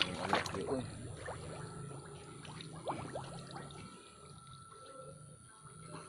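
Water trickling and splashing, busiest and loudest in the first second, with scattered small drips and clicks after that.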